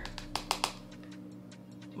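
A quick cluster of about half a dozen light clicks and taps in the first moment, then one more, from a pressed-powder compact and makeup brush being handled. A faint steady low electrical hum runs underneath.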